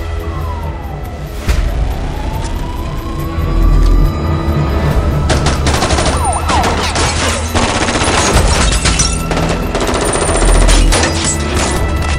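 Action-trailer soundtrack music with deep booms, then from about five seconds in a long stretch of rapid automatic gunfire lasting about six seconds.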